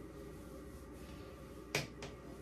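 A single sharp click near the end, over a low steady room hum.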